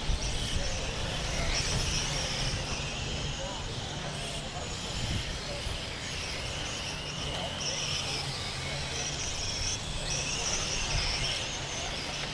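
Small electric motors of 1/10-scale M-chassis RC race cars lapping the track, a high whine that rises and falls in pitch as the cars speed up and slow down through the corners.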